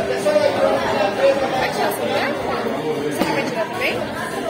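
Many diners talking at once in a crowded restaurant: a steady din of overlapping conversation in a large, echoing room.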